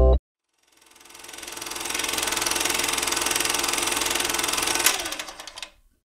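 The song cuts off almost at once. After a moment of silence, a rapid buzzing electronic noise effect fades in, holds steady with one sharp hit about five seconds in, then fades away: a production-company logo sting with a glitch-static sound.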